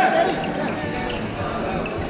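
A few sharp hits and squeaks from a badminton rally: racket strikes on the shuttlecock and court shoes squeaking on the synthetic floor. Voices chatter through the hall under it.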